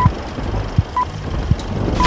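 Film-leader countdown beeps: a short, high, steady beep once a second, keeping time with the numbers counting down. Under them runs a low rumbling crackle with occasional sharp pops, like worn film running through a projector.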